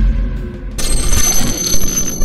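Outro logo-sting sound effect: a deep bass rumble fading away, then about a second in a sudden bright, high ringing shimmer.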